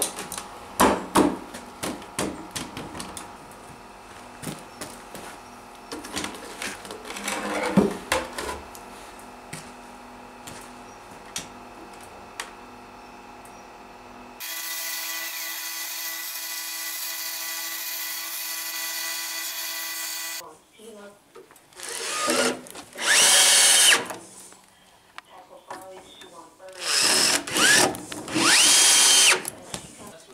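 Clattering and knocking as the wooden dibber drum with its metal spikes is rolled and shifted on a concrete floor. Then, about halfway through, a CNC plasma cutter runs with a steady hum for about six seconds while cutting steel plate. In the last third a cordless drill driver drives screws in two bursts, its whine rising and falling in pitch each time.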